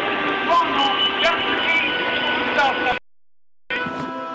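Street sound: traffic and indistinct voices, with a steady hum, cutting off sharply about three seconds in. After a brief silence, a sustained music chord begins just before the end.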